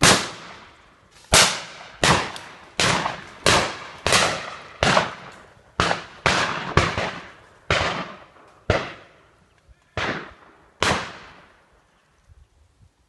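Shotguns firing at driven partridges: about fifteen sharp shots over eleven seconds, coming in quick succession from several guns, each shot trailing off in a short echo.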